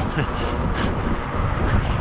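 Steady rumbling ride noise from a bicycle-mounted action camera moving along a city street: wind on the microphone and road noise, with traffic around.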